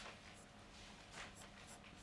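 Faint strokes of a marker pen writing on a white board, a few short scratchy squeaks spread through the pause.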